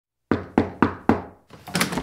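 Four quick, evenly spaced knocks on a door, each ringing out briefly, followed by a softer noise that builds near the end.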